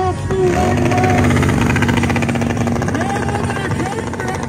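Motorcycle engine held at steady revs as the bike rides a wheelie, its note holding one pitch for a couple of seconds before easing near the end.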